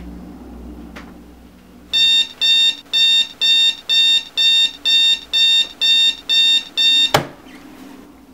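Electronic alarm clock beeping: a fast, even run of high beeps, about two a second, that starts about two seconds in and is cut off near the end by a sharp click.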